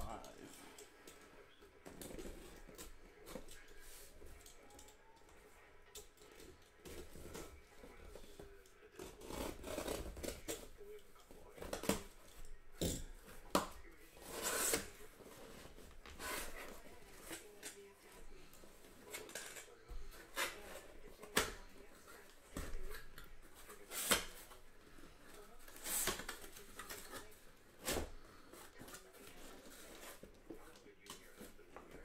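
A sealed cardboard shipping case being cut and opened: a blade slicing through packing tape and cardboard, with irregular scraping, crinkling and several sharp rips and knocks as the flaps are pulled open.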